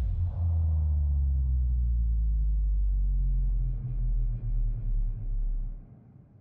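Deep, loud bass rumble of an outro sound effect that starts abruptly, holds steady for about four seconds, then pulses four times and dies away near the end.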